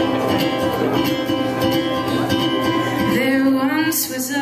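A ukulele strummed in a steady rhythm, playing a song's opening, with a woman's singing voice sliding in near the end.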